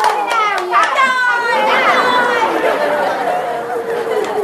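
Several people talking and calling out over one another at once, lively excited chatter with no single clear voice.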